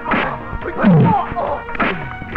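Film fight sound effects: sharp dubbed punch whacks, several in quick succession, with short shouts and grunts from the fighters over background music.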